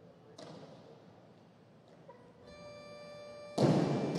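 A steady electronic tone sounds about halfway through, the down signal for the lift, then near the end a loud crash as the 80 kg barbell with bumper plates is dropped onto the wooden platform, followed by music.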